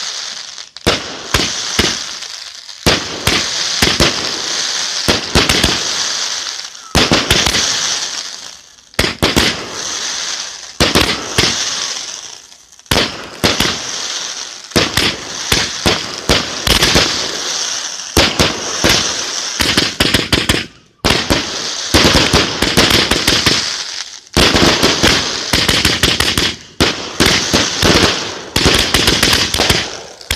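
Fireworks firing in rapid volleys: a dense string of sharp bangs and crackle with hiss, broken by a few brief pauses between volleys.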